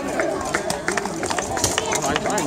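Voices of people talking and calling out, with frequent sharp metallic clinks and clanks of plate armour as armoured fighters move about.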